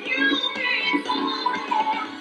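A song: a singing voice over a backing track, with little bass.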